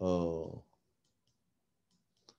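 A man's drawn-out hesitation sound "e", about half a second long, then near silence.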